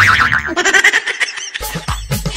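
Cartoon boing sound effect with wobbling pitch, followed by a short comic music sting that turns more rhythmic near the end.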